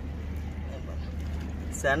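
A steady low rumble, with a man's laugh starting near the end.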